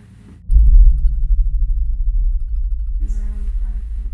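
A loud low rumble starts abruptly about half a second in and slowly fades, with faint regular ticking above it. Near the end a short, faint voice-like sound, captioned as a ghostly woman's voice.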